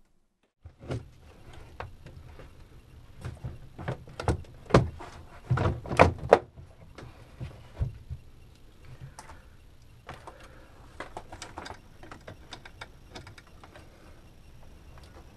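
Irregular clicks and knocks of hands handling wires and the wooden switch-panel board during electrical wiring, the loudest cluster of knocks between about four and six and a half seconds in, over a steady low hum.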